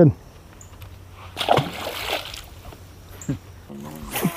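A largemouth bass dropped back into the pond, landing with a short splash about a second and a half in.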